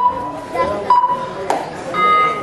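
Steady ringing tones, one at the start lasting about half a second and a shorter one about a second in, with a sharp click about a second and a half in, over crowd voices.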